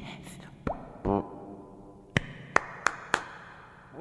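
A man's short vocal sound about a second in, then four sharp clicks a few tenths of a second apart.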